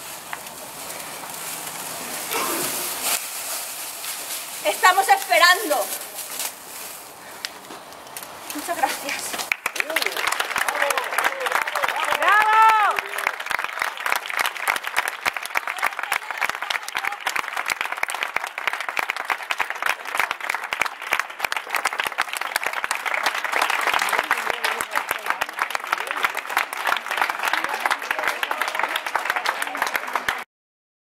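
Audience applauding, starting about nine seconds in and going on steadily, with a few voices calling out over it.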